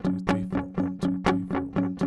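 Electric guitar strumming an F#5 power chord in steady downstrokes, about four strums a second, each chord ringing into the next.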